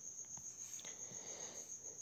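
Faint, steady high-pitched pulsing trill, like a cricket chirping, under low room tone.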